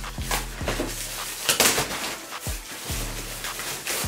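A plastic courier mailer bag being torn open and rustled, loudest about a second and a half in, as a cardboard shoe box is pulled out of it. Background music with a bass beat plays underneath.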